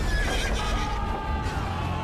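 Movie-trailer soundtrack: a horse whinnying over a deep rumble and music.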